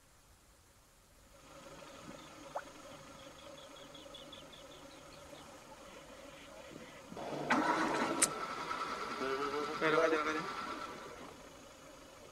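Safari jeep engines running, growing much louder about seven seconds in, mixed with people's voices.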